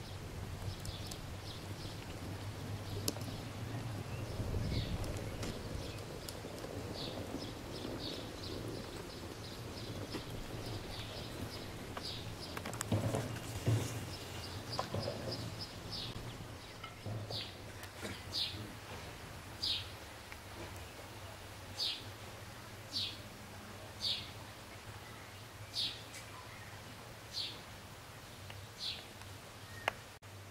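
A small bird chirping outdoors: short high calls, quick and irregular at first, then single chirps about every second and a half, over a low steady hum.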